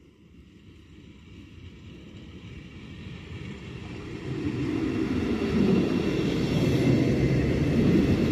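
Trenord ALe 582 electric multiple unit approaching and running past, its low rumble of wheels on the rails growing steadily from faint to loud and loudest in the second half.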